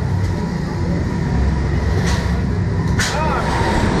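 Steady low rumble while the Slingshot reverse-bungee ride capsule waits, then, about three seconds in, a sudden rushing burst as it is released and flung upward, with riders' voices starting just after.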